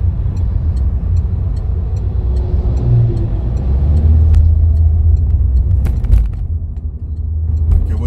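Car in motion heard from inside the cabin: steady low engine and road rumble, with a hiss of tyre and traffic noise as heavy trucks pass close by that fades about halfway through. A couple of sharp clicks about six seconds in.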